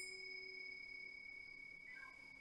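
A single soft chime struck once at the start, its clear high tone ringing on and slowly fading, as part of soft meditation background music.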